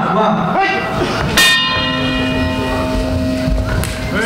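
A single strike of the fight's round bell about a second and a half in, ringing on with a long, slowly fading tone: the signal that round one begins.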